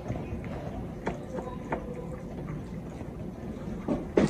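A utensil stirring thick cake batter in a glass mixing bowl: soft wet churning with a couple of light clicks of the utensil against the glass.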